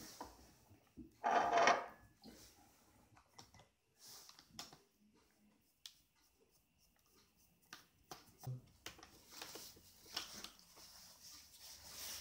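Phillips screwdriver backing small screws out of a plastic laptop screen bezel: faint, scattered clicks and scrapes of the driver tip in the screw heads. One louder, brief sound comes about a second and a half in.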